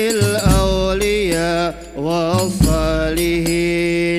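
Hadroh ensemble performing an Arabic qasidah: voices sing a slow, ornamented line that glides between notes, over deep drum strokes about two seconds apart.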